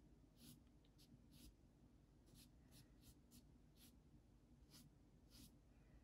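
Faint, short scratchy strokes of a watercolour paintbrush on paper, about ten of them, irregularly spaced, over low room tone.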